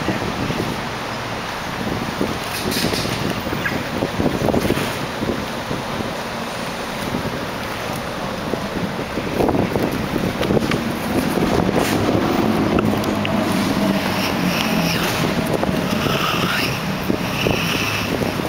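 Steady outdoor city noise: a traffic-like rumble with wind on the microphone, and scattered light knocks and clatter.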